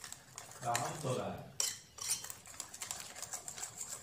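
A hand mixing vegetable pancake batter in a ceramic bowl, with quick light clicks and clinks against the bowl, several a second. A voice speaks briefly about a second in.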